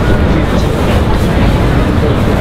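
Street-market ambience: a loud, steady low rumble of city traffic with indistinct background chatter.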